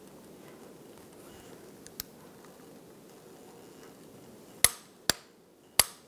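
Click-type torque wrench on a crowfoot clicking as the strut's top nut reaches its set torque of 41 ft-lb: three sharp clicks near the end, after one faint tick about two seconds in.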